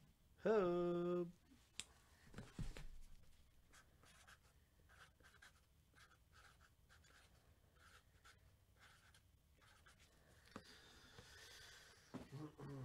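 A short hummed 'mmm' in a person's voice, rising slightly then held for under a second, near the start. After it come faint, scattered clicks and light scratching and rustling, like items being handled on a table.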